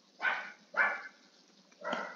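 Two short animal calls about half a second apart, each starting sharply and dying away quickly.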